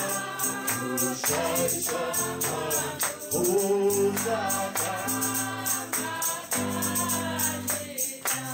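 Live gospel worship song: a man sings the lead into a microphone while the congregation sings along, over steady bass notes and a tambourine keeping an even beat.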